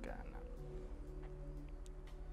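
A faint, steady low hum, with a few soft held low tones joining it about half a second in.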